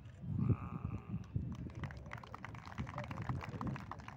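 A sheep bleats once, a held call of about a second, over low rumbling on the microphone; then a patter of scattered clapping.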